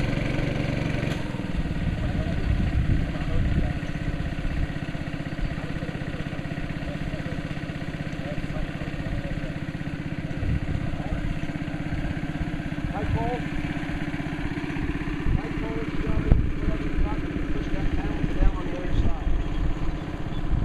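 A small engine running steadily, its note changing about a second in, with faint voices over it.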